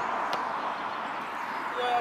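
Steady outdoor background noise, an even hiss without a rhythm. Near the end there is a brief pitched call or voice.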